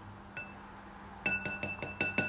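Wooden spoons knocking against glass mixing bowls while stirring, each knock leaving the bowl ringing with a clear tone. There is a single knock early on, then a quick run of about seven knocks, some six a second, from just past the middle.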